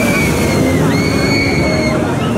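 Spinning-disc amusement ride with riders aboard running along its U-shaped track: a steady rush of ride and crowd noise, with a long high-pitched sound that dips about a second in and rises again.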